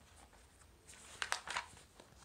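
A picture-book page being turned by hand: a few short, crisp paper rustles and flicks about a second in.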